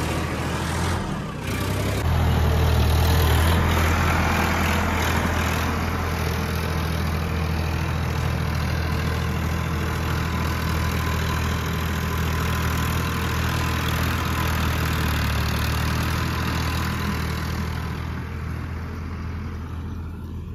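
A farm tractor's diesel engine runs steadily under load while pulling a tillage implement across soft soil, a continuous low hum. It gets louder about two seconds in and fades slightly near the end.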